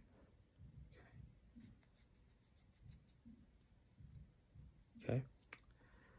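Faint scratching and light ticking of a needle and thread being worked and pulled through by hand, with soft handling bumps; a short run of ticks comes about two seconds in.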